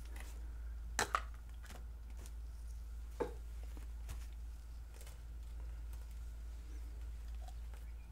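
A few light clicks and knocks of plastic paint squeeze bottles being handled: two close together about a second in, another a little after three seconds, then fainter ticks, over a steady low hum.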